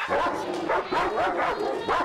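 Large dog barking over and over in short yips, about three a second.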